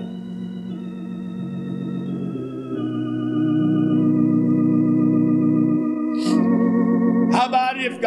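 Organ holding slow, sustained chords that change every second or so, growing louder about three seconds in. A man's voice comes back in over the organ near the end.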